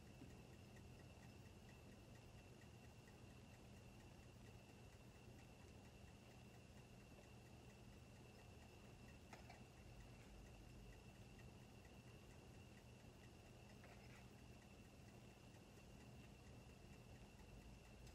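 Near silence: room tone with a faint steady high-pitched whine and faint, evenly spaced ticking, and a couple of faint clicks.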